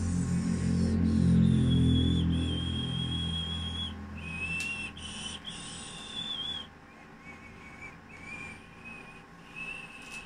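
High whistling: a few long held notes at different pitches, like a slow tune, over a low hum during the first few seconds.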